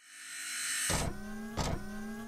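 Whooshing sound effect swelling through the first second, then a sudden hit and a whirring electronic tone that rises slightly in pitch, with a second short hit near the end.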